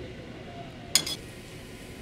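A metal spoon clinks once against a dish about a second in, a short bright ring, as chopped garlic is spooned out of a small ramekin. A steady low kitchen background runs underneath.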